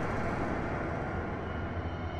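A steady low rumbling drone with a faint hiss above it, fading slowly.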